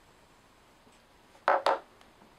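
Two sharp knocks in quick succession about a second and a half in: a plastic disposable lighter being put down on the desk.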